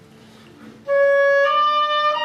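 Oboe playing the opening motif of the piece: after about a second of quiet, a loud held note, then a step up to a slightly higher held note.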